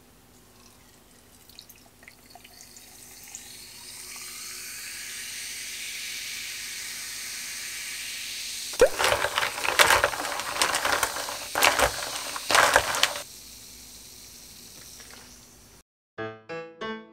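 Carbonated water fizzing over ice in a glass, a steady bubbling hiss with small pops. From about nine to thirteen seconds in come louder choppy bursts of liquid sloshing and splashing in the glass.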